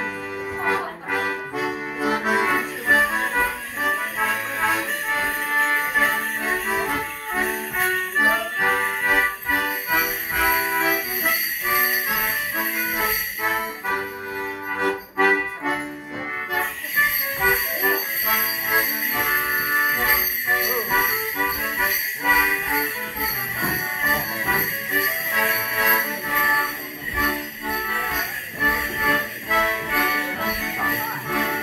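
Morris dancers' leg bells jingling in time with their stepping on a wooden floor, over a live dance tune. The bells fall quiet for about two seconds halfway through, while the dancers stand with handkerchiefs raised, then start again.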